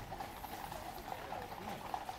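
Faint clip-clop of Household Cavalry horses' hooves on the road as the mounted column walks past.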